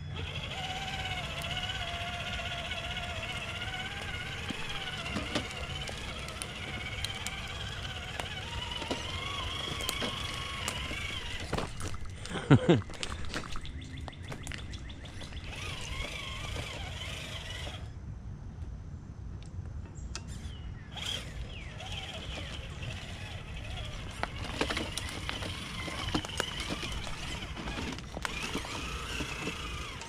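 Traxxas TRX-4 RC crawler's electric motor and gear drivetrain whining as it crawls over rocks on Traxx tracks, the pitch rising and falling with the throttle. The whine drops out for a few seconds past the middle, with scattered clicks throughout. A person laughs briefly about twelve seconds in.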